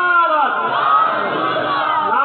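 A man's raised voice intoning long, drawn-out melodic phrases, each note held and bending in pitch, louder than the ordinary talk around it.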